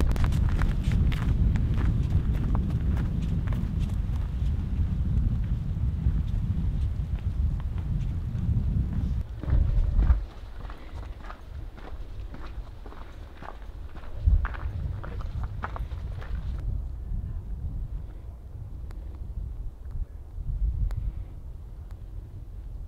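Footsteps on a snow-dusted trail of frozen leaves and rocks, a steady run of short scuffs and crunches. Wind rumbles heavily on the microphone for about the first ten seconds, then eases off, leaving the steps clearer.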